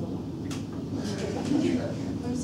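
Low murmur of voices, with a faint click about half a second in.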